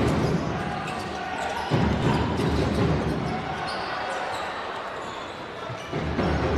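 Basketball bouncing on a hardwood court as it is dribbled, short sharp knocks over the steady noise of an arena crowd.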